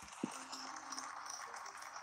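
Faint room tone: a low, even hiss with one soft click about a quarter of a second in.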